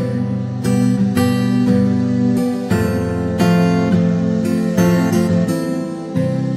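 Background music led by strummed acoustic guitar, changing chords every second or so.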